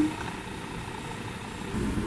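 Steady low mechanical hum with a faint hiss, as of a household fan or air-handling unit running, swelling slightly near the end.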